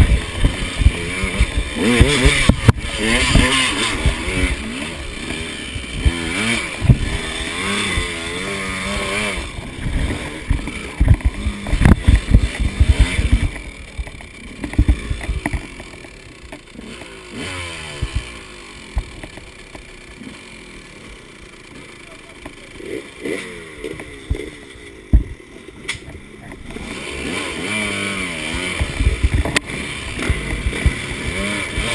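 KTM 200 XC two-stroke dirt bike engine revving up and down as it climbs a rough trail, with sharp knocks from the bike hitting rocks and roots. About halfway through it drops to a quieter, lower running as the bike slows and stops, then picks up again near the end.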